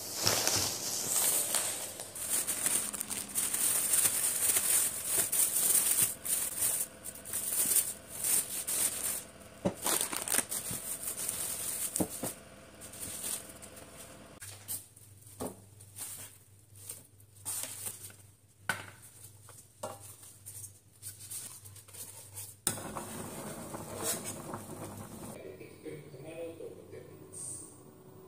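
Thin plastic shopping bags rustling and crinkling as they are carried and handled, for about the first half. After that, sparse knocks and clicks as things are set down, over a low steady hum.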